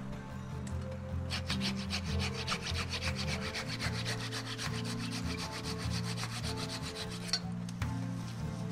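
Hand pruning saw cutting the leftover stub of an old cut on a cherry tree trunk, in quick, even back-and-forth strokes that start about a second in and stop near the end.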